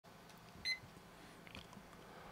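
A single short, high-pitched electronic beep about two-thirds of a second in, against near silence, with a faint click shortly after.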